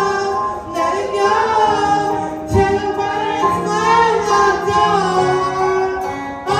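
A solo singer singing into a handheld microphone over instrumental accompaniment, holding and bending long sung notes.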